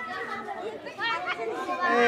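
Chatter of several people talking in the background, with no other sound standing out.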